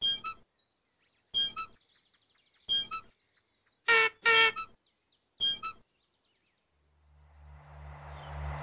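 Six short pitched toots, each under half a second and mostly a second or more apart, two of them close together about four seconds in, over faint bird chirping. A low rumbling noise swells in near the end.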